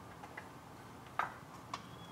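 Faint, sparse clicks of multimeter test-probe tips and wire terminals being handled against the metal connections of an electric hotplate, the sharpest click about a second in.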